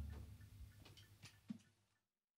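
The last hit of a live band ringing out and fading away in the first half second, then near silence with a few faint clicks in the studio room.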